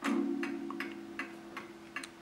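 Late-1920s Sessions tambour mantel clock striking the half hour: a single deep blow of the hammer on its gong, ringing and slowly fading, with the clock's loud ticking underneath.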